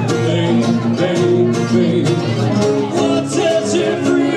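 Live band playing: guitars strummed in a steady rhythm while a man sings into a microphone, heard through the PA.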